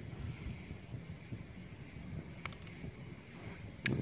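Lock pick working the pin stacks of a 5-pin Yale-style pin-tumbler cylinder under tension: a few faint metallic clicks, a small cluster about two and a half seconds in and one more just before the end, over low handling noise.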